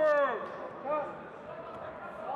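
A man shouting: a loud call at the start that falls in pitch and breaks off, then a short call about a second in, over steady background hall noise.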